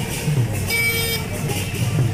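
Vehicle horn sounding once, a short blast of about half a second near the middle, over the steady running of slow-moving vehicle engines.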